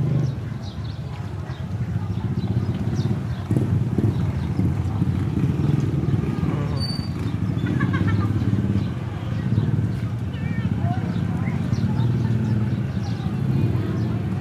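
People's voices in the background over a steady low rumble.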